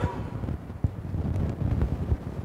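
Low rumbling noise on a clip-on microphone, with a couple of soft knocks, as clothing rubs against it and it is handled.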